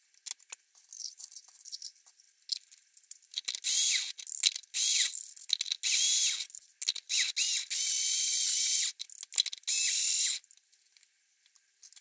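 Small electric grinder run in about five short bursts, breaking biscuits down into crumbs, each burst starting and stopping abruptly. Light clicks and knocks come before the grinding starts.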